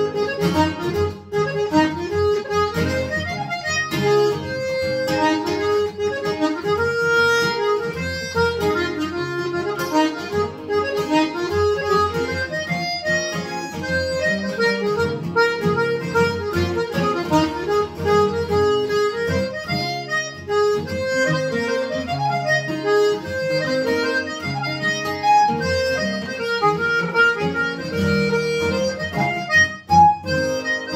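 Button accordion playing a waltz tune with acoustic guitar accompaniment.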